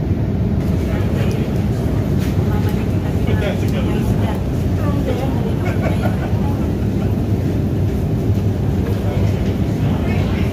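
Steady low drone of an airliner cabin in flight, with indistinct voices over it between about one and six seconds in.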